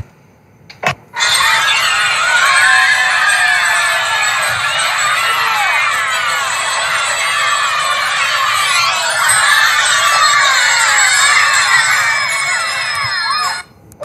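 A crowd of children screaming and shouting all at once, thin-sounding with no low end. It starts after a quiet first second broken by a single click and stops abruptly just before the end.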